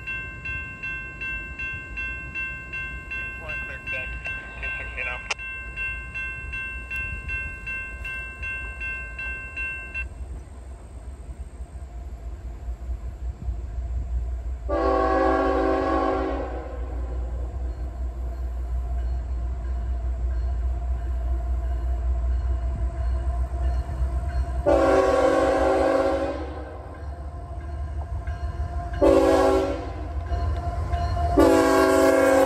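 An approaching CSX diesel freight locomotive sounding its air horn: two long blasts about ten seconds apart, then a short one near the end, over a low engine rumble that grows as the train nears. In the first third a steady ringing tone with even ticks is heard.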